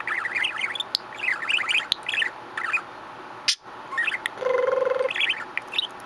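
Budgerigar chattering: fast chirps and warbling notes, with a short buzzy held note a little past the middle and a few sharp clicks.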